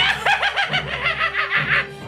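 A man's maniacal villain cackle: a fast, high-pitched string of short 'ha' notes, about seven a second, each rising and falling in pitch.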